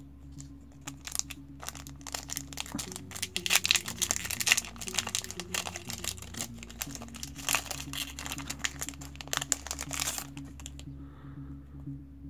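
Foil booster-pack wrapper crinkling as it is torn open by hand, in many quick crackles that stop about ten seconds in. Background music with steady held notes plays underneath.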